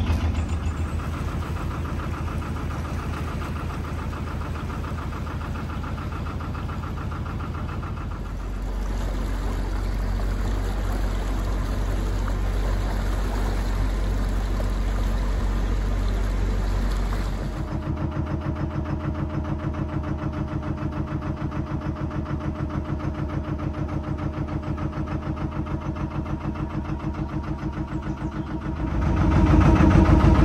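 Narrowboat diesel engine running steadily at low revs with a regular chug. Its note changes abruptly about eight and again about seventeen seconds in.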